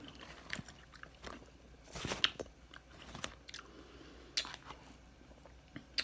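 A person chewing a mouthful of cheesy potatoes with the mouth closed: soft wet mouth clicks and smacks, with a denser run of crunchy chewing about two seconds in and a few louder clicks just past four seconds.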